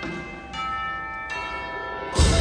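Indoor drumline front ensemble playing a soft passage of ringing, bell-like mallet-percussion chords, with new notes struck about half a second in and again past one second.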